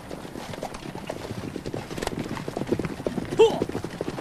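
Many horses' hooves clattering on the ground as a troop of cavalry moves, getting louder, with one short, loud cry about three and a half seconds in.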